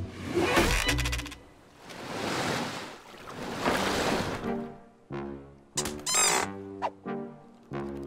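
Cartoon music and sound effects: a few quick clicks, two long rushing whooshes, then short brass-like musical notes with a brief squeaky warble partway through.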